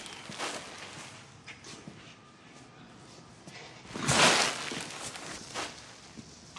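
A person moving on a concrete floor: a few faint footsteps, then one louder rustling scuff of clothing lasting about half a second, about four seconds in.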